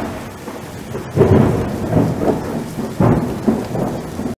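Thunderstorm sound effect: steady rain with rolls of thunder, one swelling about a second in and another about three seconds in.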